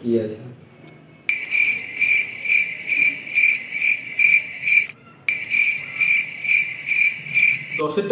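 Cricket chirping sound effect: a steady chirp repeating about twice a second, starting abruptly about a second in, breaking off briefly midway and stopping just before the end.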